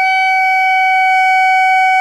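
Clarinet mouthpiece and barrel blown on their own, with no body attached, giving one long, steady, high, reedy squawk at a constant pitch: the "lonesome goose sound" of a beginner's embouchure exercise, sounding as it should with the barrel's open end uncovered.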